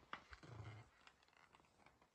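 A dog's brief low growl during a tug-of-war over a toy, about half a second in, with a few scuffling clicks around it.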